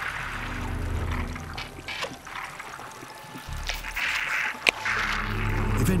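Low, sustained background music swelling twice, mixed with watery hissing sound effects and a single sharp click a little before five seconds in.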